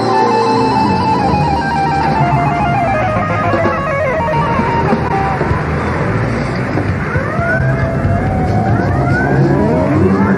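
Live electronic stage music played on keyboard synthesizer: a melody of held notes that steps downward, then gliding tones that swoop up and down from about seven seconds in, over a steady low bass.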